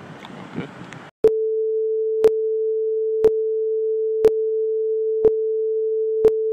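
Film countdown leader sound effect: a steady mid-pitched tone with a sharp click once every second, counting down. It starts about a second in, cutting in after brief street noise.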